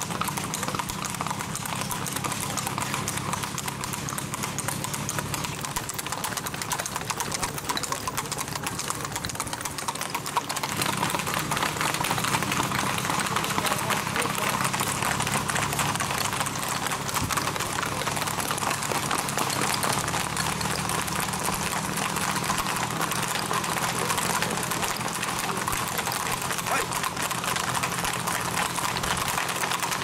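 Hooves of several gaited horses singlefooting on a paved road: a dense stream of overlapping clip-clop hoofbeats that grows a little louder about a third of the way through.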